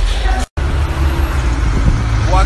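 Steady low rumble of street traffic outdoors, picked up by a phone microphone, after a brief dropout to silence about half a second in.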